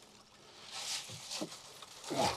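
Live crayfish rustling and lightly clattering against one another and the mesh as a full net bag of them is shaken out into a plastic crate. There is a faint scratchy shuffle about a second in, with a few small knocks.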